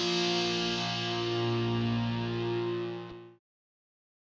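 Closing music: a guitar chord left ringing, its held notes slowly fading, then cut off abruptly a little over three seconds in.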